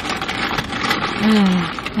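Paper sandwich wrapper crinkling and rustling as the sandwiches are handled, followed a little past halfway by a short appreciative "mm" hum.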